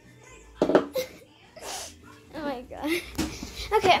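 A young girl's voice making playful sounds without clear words: a few short breathy bursts, then sliding, sing-song vocalizing in the second half.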